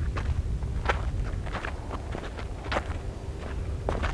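Stony gravel crunching in short, irregular crackles, about two or three a second, over a steady low rumble.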